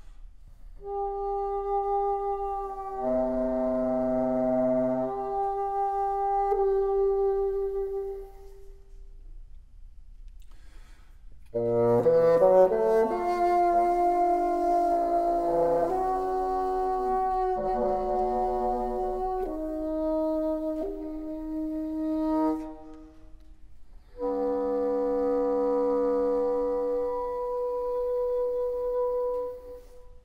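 Solo bassoon played in three phrases separated by short pauses. First comes a long held note, then a louder, quick-moving passage that climbs up from a low note, then another long held note that stops abruptly near the end. The held notes sound as chords of several pitches at once (multiphonics).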